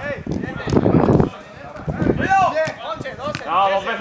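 Football training on an artificial-turf pitch: a ball being kicked several times with sharp thuds, among players' running steps, with men shouting short calls from about two seconds in. A dense rush of noise fills the first second or so.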